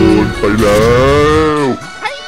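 A cartoon monster's cry, one long, low, moo-like call that drops in pitch and dies away near the end, with background music underneath.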